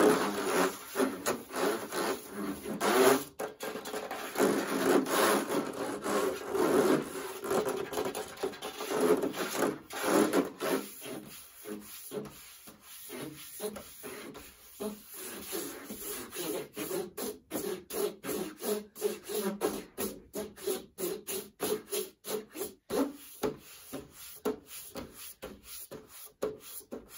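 Fingernails scratching over a tower fan's casing and grille, then, from a little under halfway through, fast fingertip tapping on it at about three taps a second.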